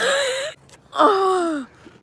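A young woman's wordless vocal outbursts: a breathy, gasping squeal for about half a second, then a falling, whining cry about a second in.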